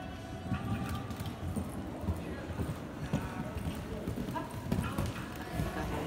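Hoofbeats of a horse cantering on arena sand, an irregular run of dull thuds.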